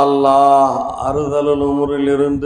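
A man's voice chanting a dua prayer in long, held notes, two sustained phrases with a short break just before one second in.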